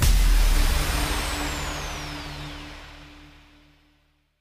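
Final hit of an electronic outro jingle: a sudden crash of noise over a held low note, with a thin falling whistle-like sweep, fading out over about four seconds.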